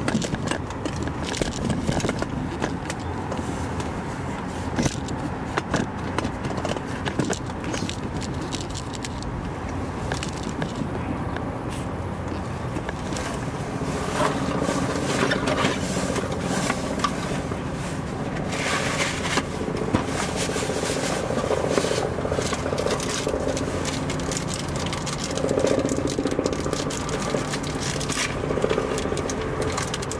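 Irregular metal clicks and scraping of hand tools working on brake-line fittings under a vehicle, with a low steady hum coming in about halfway through.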